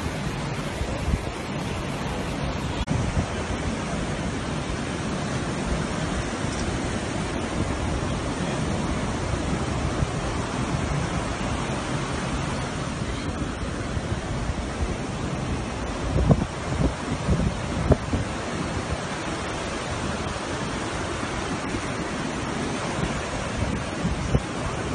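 Steady rush of surf breaking on a beach, mixed with wind blowing on the microphone, with a few stronger gusts about two-thirds of the way through.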